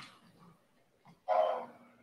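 A single short call, about half a second long, a little past the middle.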